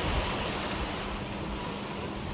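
Steady rushing noise of sea water and wind, getting slightly quieter.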